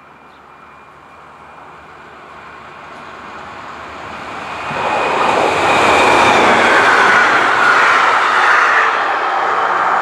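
SNCB electric multiple unit AM96 448 passing at speed: the rail and wheel noise builds steadily as it approaches and turns into a loud roar from about five seconds in as the coaches go by, with a faint whine that falls slightly in pitch, and only eases a little near the end.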